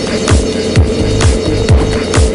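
Electronic dance music with a steady kick-drum beat, about two beats a second.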